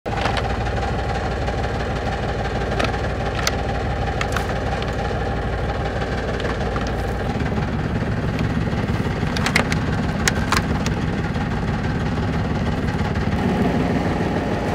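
Small fishing boat's engine idling steadily, with a few sharp clicks and knocks over it; the low drone shifts about halfway through.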